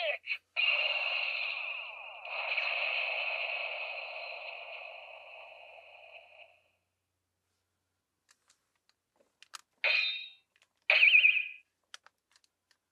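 Electronic sound effect from the TAMASHII Lab Laser Blade toy's speaker: a bright, steady, wavering tone, broken briefly about two seconds in, then fading away by about six seconds. Two short electronic sounds come near the end.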